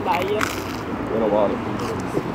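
Quiet talk from people nearby over a steady background of street traffic noise, with a couple of short crisp clicks near the start.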